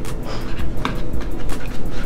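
A table knife sawing through a soft sandwich on a plate, with a couple of sharp clicks as the blade meets the plate, over a low rumble.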